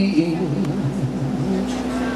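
Live music: a male singer draws out a low, wavering wordless run between the words of a line, over a held acoustic guitar chord.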